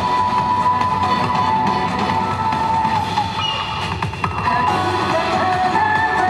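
Yosakoi dance music playing loud and steady, a sustained melody line carried over a full band backing.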